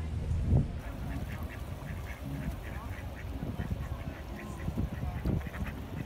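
A group of ducks swimming on a river, calling with short, repeated quacks many times over. A single loud thump comes about half a second in.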